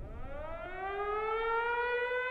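Civil defense air-raid siren winding up, its pitch rising and then levelling off into a steady wail.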